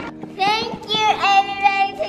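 A young girl's high voice singing long, drawn-out notes without clear words.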